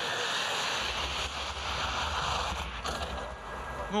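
A ski jumper's skis running down the inrun track at about 94 km/h, a steady rushing hiss, with a low rumble joining about a second in.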